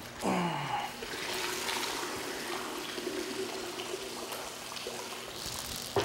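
Ink sloshing and trickling as a large calligraphy brush is worked in a bucket of ink and lifted out, dripping. A theremin glides down in the first second and then holds a faint steady note underneath, and a sharp knock comes at the very end.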